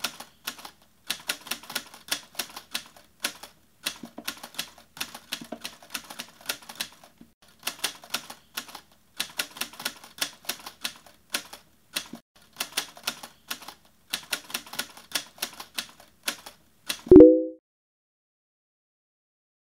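Typewriter keystroke sound effect: rapid, irregular clacking in runs with short pauses. Near the end comes a short, loud tone that falls in pitch.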